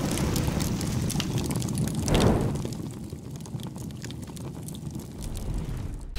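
Fire-like transition sound effect: a low, noisy rush with fine crackles. It swells once about two seconds in, then fades to a quieter crackle.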